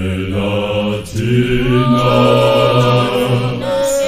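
Zionist church choir singing a cappella in long held chords, with deep men's voices under higher parts. There is a brief break about a second in before the next sustained chord.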